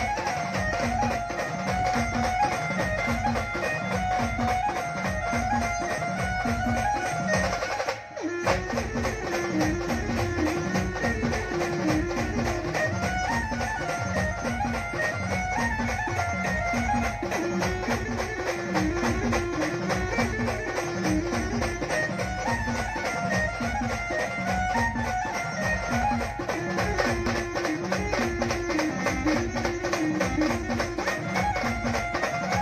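A Maharashtrian brass-and-drum band playing a tarpa pavri tune: a repeating melody over a steady drum beat. The music drops out for a moment about eight seconds in, then carries on.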